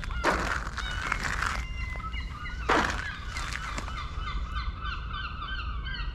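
Birds calling: a run of short, repeated honking calls, quickening to about four or five a second in the second half. Two louder scuffing noises come in, one near the start and one a little before the middle.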